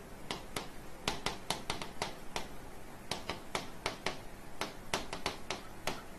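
Stylus tip tapping and clicking on the glass of an interactive whiteboard during handwriting: a quick, irregular run of sharp taps, several a second.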